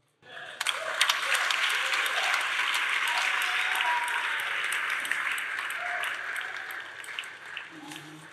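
Congregation applauding, breaking out suddenly about half a second in and tapering off near the end, with a few voices calling out over the clapping.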